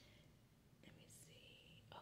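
Near silence: quiet room tone, with a faint short hiss about a second in and a soft click near the end.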